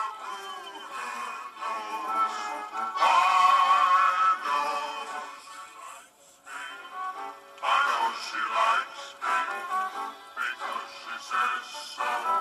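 Vinyl record playing music with singing through the small loose 3-watt speakers of a suitcase record player; the sound is thin, with no deep bass. About halfway through it drops away almost to nothing for a moment as the volume knob is turned, then comes back.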